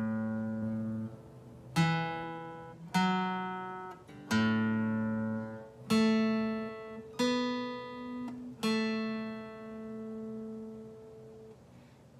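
Acoustic guitar in standard tuning playing a slow single-note riff with a pick, each note left to ring: the open A string rings in, then the second and fourth frets on the D string, the open A again, then the second, fourth and second frets on the G string, the last note fading out.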